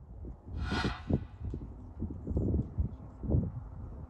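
Outdoor wind buffeting the microphone: an uneven low rumble with irregular bumps, and a short hissing rustle a little under a second in.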